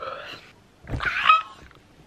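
A young woman's excited, high-pitched wordless squeals: two short vocal outbursts, the second louder with a wavering pitch about a second in.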